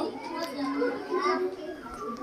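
Children's voices talking quietly, well below the level of the teacher's speech around them.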